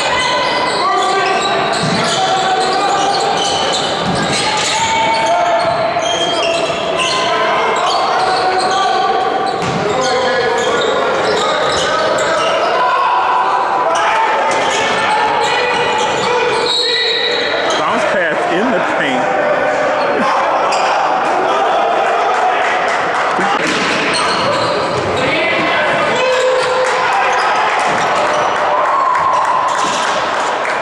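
Live basketball play in a gym: the ball bouncing on the hardwood court, with players and spectators talking and shouting throughout, echoing in the hall.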